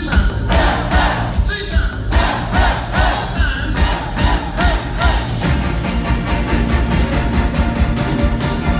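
Live rock band playing electric guitars, bass guitar and drums, with a steady drum beat running through.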